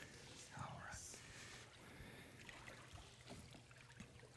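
Near silence: faint water movement in a church baptistry pool, with a brief low murmur of voices about half a second in.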